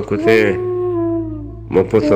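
A voice singing a Balochi dastonk holds one long note that slowly falls in pitch and fades, then a new sung phrase starts near the end, over a steady low hum.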